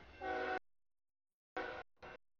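Diesel locomotive horn on an approaching CSX freight train: a blast of about half a second, the loudest sound, then a shorter blast near the end, each cut off abruptly.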